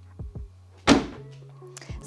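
The boot lid of an Aston Martin DB12 Volante being shut by hand: one sharp thunk about a second in.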